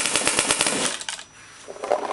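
MacDev Clone paintball marker firing a rapid string of shots, stopping about a second in.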